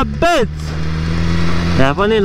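BMW S1000RR's inline-four engine running at a steady, unchanging speed while the motorcycle is ridden, with wind and road rush over it.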